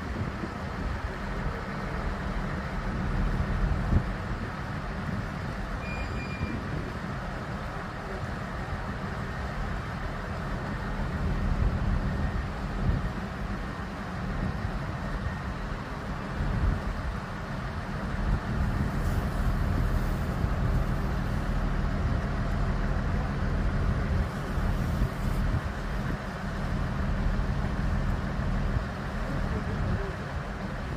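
Large crawler crane's diesel engine running steadily with a low rumble as it holds a steel footbridge span on its hook, with a single short beep about six seconds in.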